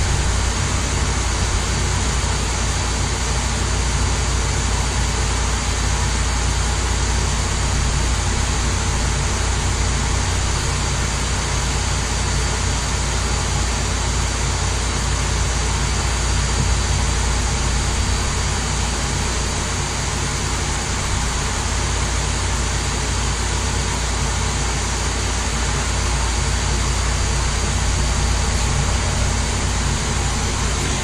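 DJI Mavic Pro's internal processor cooling fan running steadily: a constant whir with a faint high tone over a low hum. It is a sign that the fan, which had stopped working, is running again.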